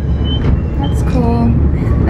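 Babbacombe Cliff Railway funicular car running down its track, a steady low rumble, with a short voice about a second in.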